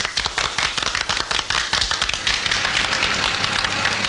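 Audience applause: a dense clatter of many hands clapping, starting suddenly.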